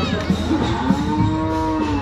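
A white draught ox harnessed to a cart moos once: a single call of about a second, starting about a second in, rising slightly and then falling in pitch, heard over background parade music.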